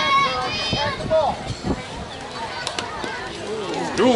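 High-pitched girls' voices calling and cheering around a softball field, with a short sharp knock about two and a half seconds in.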